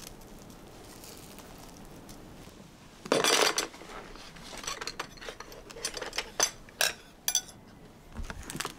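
Table knife scraping and clinking on a ceramic plate while trimming the crusts off a slice of toast. After a quiet start there is a loud scraping rustle about three seconds in, then a run of scrapes with several sharp clinks near the end.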